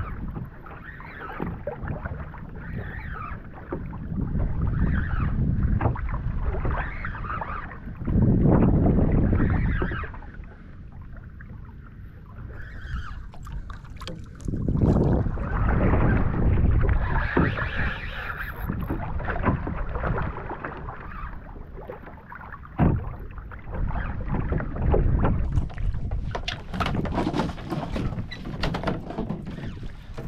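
Wind buffeting the microphone over water washing and splashing around a fishing kayak at sea, in uneven surges that swell and fade several times.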